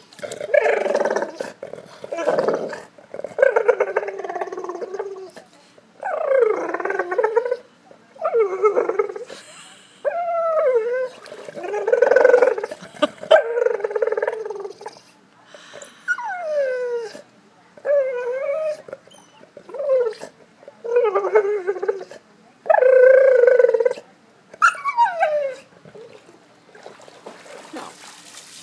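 Golden retriever whining in about a dozen drawn-out vocal bouts, several sliding down in pitch, wanting its ball.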